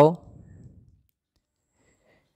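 A man's voice ends a word right at the start, then near silence: room tone.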